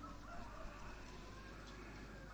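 Faint background noise with a faint, distant bird call, of the fowl kind.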